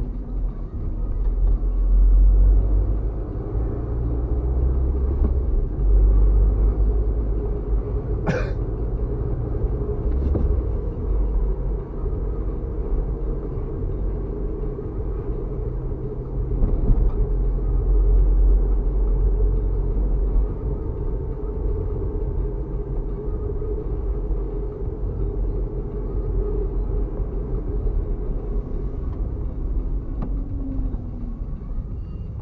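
Steady low rumble of a car's engine and tyres on the road, heard from inside the cabin while driving. One brief sharp noise stands out about eight seconds in.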